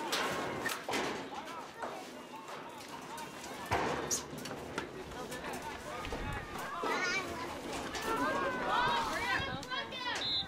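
Indistinct voices of spectators and young players around a youth football field, several talking and calling out over one another, with louder shouts in the last few seconds.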